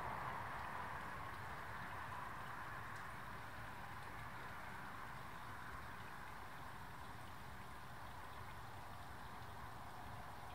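A faint, steady water-like hiss, a little louder at first and easing off over the first few seconds before holding even.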